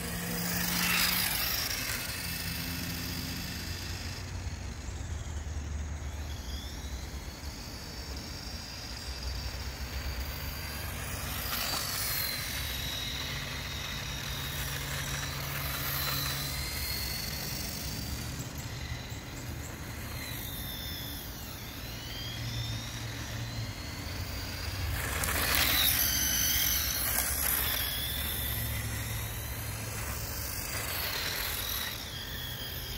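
Small brushed electric motor of a battery-powered RC go-kart running, its high whine rising and falling again and again as the kart speeds up and slows down. It gets louder about a second in and again near the end.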